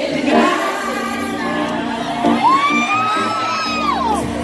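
Live R&B ballad: a female lead vocal over a band's sustained backing, with the audience cheering and whooping. A long, high, wavering note is held through the second half and falls away at the end.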